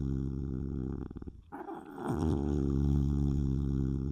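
An animal's low, drawn-out growl. One growl ends about a second in with a rattle, and after a short break another long growl starts and holds almost to the end.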